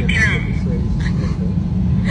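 Steady low rumble of an airliner cabin, with a short snatch of voice at the start.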